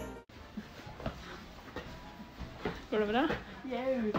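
Background music that cuts off right at the start, then faint handheld noise with a few light knocks, and a person's voice briefly from about three seconds in.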